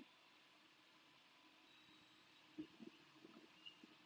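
Near silence: room tone, with a few faint short sounds in the second half.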